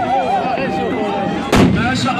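Tbourida horsemen's black-powder muskets fired together as one loud blast about one and a half seconds in, with a trailing echo after it.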